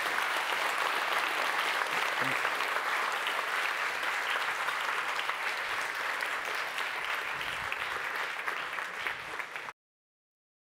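Audience applauding steadily, easing off slightly in the later seconds and cutting off suddenly near the end.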